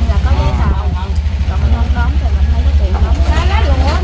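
A woman talking over a loud, steady low rumble with a fast even pulse.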